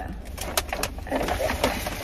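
Eating sounds: soft chewing and murmuring at the mouth, with several light clicks from a plastic food container, over a low steady hum.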